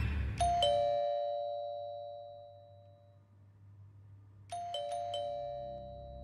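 Two-tone doorbell chime. A higher note and then a lower note sound just after the start and fade away over about two seconds. Near the end the bell is rung again with several quick ding-dongs in a row.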